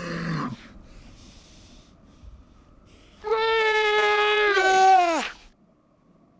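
Weddell seals, a mother and her pup, calling to each other on the ice: a short low call at the start, then about three seconds in a long, loud, steady pitched call lasting about two seconds that drops in pitch as it ends.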